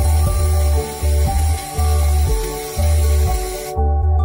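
Background music with a steady beat, over a steady high hiss from a handheld fiber laser head cleaning a weld seam. The hiss cuts off suddenly near the end.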